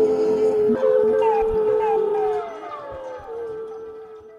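Trombone holding a note with short downward slides, getting quieter about halfway through and fading out at the end.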